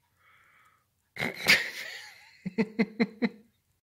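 A man laughing: a loud breathy burst of air, then about five short, quick laugh pulses.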